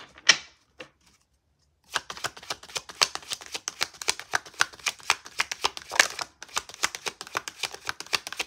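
A deck of tarot cards being shuffled by hand, overhand: a quick, dense run of clicks as packets of cards slap together, starting about two seconds in after a short pause and a single knock at the start.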